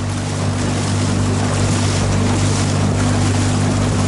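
Small outboard motor on an aluminium coaching boat running at a steady low speed, a constant hum over a steady hiss of water and wind.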